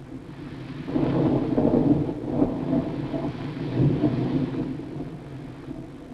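Rolling thunder: a low rumble that swells about a second in, holds for a few seconds and dies away near the end.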